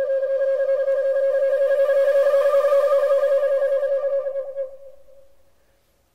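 Solo shakuhachi, the Japanese end-blown bamboo flute, playing one long breathy note that wavers rapidly and fades out about five seconds in.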